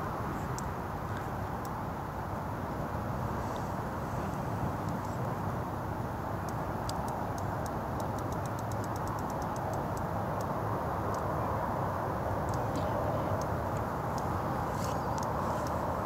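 Steady rushing background noise, with a run of faint, quick, even ticks about halfway through from a spinning reel being wound as a fish is played on a bent feeder rod.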